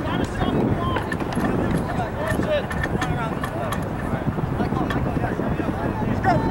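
Indistinct calling and shouting from several voices across an open rugby field, players and sideline spectators overlapping, over a steady low background rumble.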